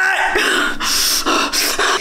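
A woman's short voiced groan, then several heavy, breathless exhalations: she is out of breath from a set of push-ups.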